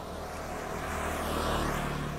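Motor scooter passing close by: its small engine and tyre noise swell to a peak about a second and a half in, then fade as it goes past.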